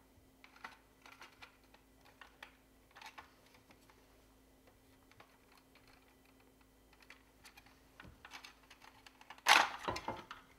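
Small irregular plastic clicks and ticks as a trim removal wedge pries at the retaining tabs of a hard plastic toy plane's underbelly, in two spells with a pause between. A louder sharp sound near the end as the last tab comes free.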